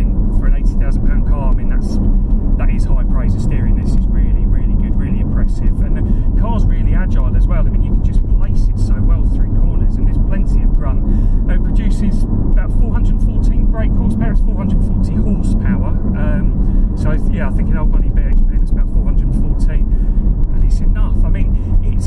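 A man talking over the steady drone of the Porsche 718 Cayman GT4 under way, heard inside the cabin: engine and road noise from its mid-mounted, naturally aspirated 4.0-litre flat-six.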